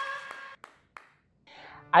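The tail of a live audience cheering and whooping fades out, then two soft, single hand claps, a brief near-silent gap, and a breath just before a man starts talking.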